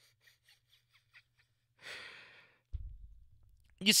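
A man's breathy sigh about two seconds in, followed by a dull low thump shortly before he speaks again.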